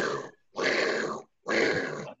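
A man imitating a hot air balloon's burner with his voice: three hissing, roaring blasts, each under a second, with short silent gaps between them.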